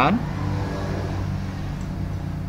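A steady low hum of a running motor or engine, with a voice's last word cut off right at the start.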